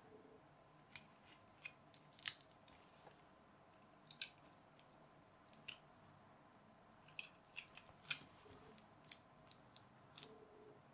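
Small craft knife slitting the sticky tape that binds a pack of 18650 lithium-ion cells, a scattering of faint clicks and crackles.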